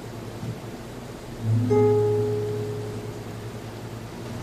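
Nylon-string classical guitar playing the closing bars of a song: soft playing, then a final chord struck about a second and a half in, left ringing and fading away.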